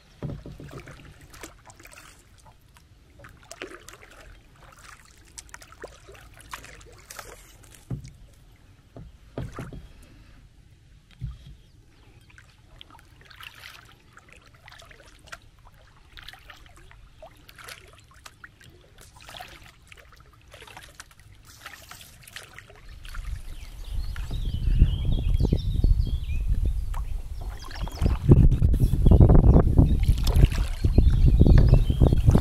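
Kayak paddle strokes in calm water: the blade dips, drips and makes small splashes at irregular intervals. From about three-quarters of the way in, a much louder low rumble covers the paddling.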